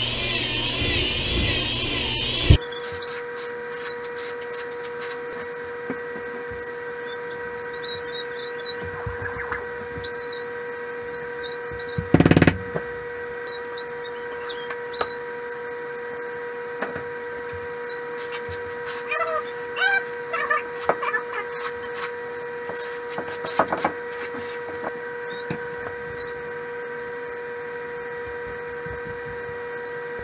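Corded drill with a paddle mixer whirring as it stirs tile mortar in a plastic bucket, wavering in pitch, then stopping abruptly about two and a half seconds in. A steady hum follows, with faint high wavering notes, scattered light clicks and one loud sharp knock near the middle.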